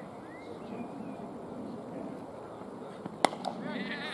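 A single sharp crack of a cricket bat hitting the ball about three seconds in, followed by a fainter click, over a low murmur of voices.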